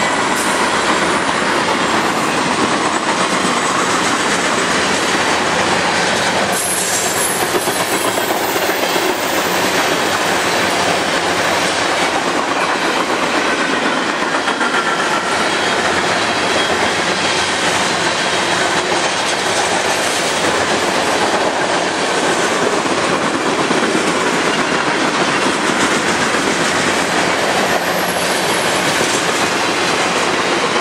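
Freight cars of a manifest train rolling past close by: a loud, steady noise of steel wheels on rail, unbroken throughout.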